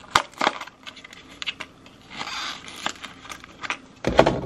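Small cardboard jewelry box being opened by hand: two sharp clicks close together near the start, a short scraping rustle about halfway through, and a few light taps.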